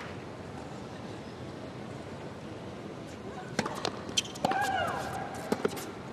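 Hushed indoor arena crowd, then tennis ball strikes: a few light ball bounces, a sharp racket hit about four and a half seconds in with a drawn-out vocal shriek from the player, and two more quick ball impacts near the end.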